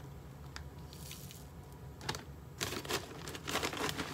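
A plastic snack bag crinkling and rustling as a spoon scoops nuts and dried fruit out of it, with a few light clicks early on and denser crinkling in the last second and a half.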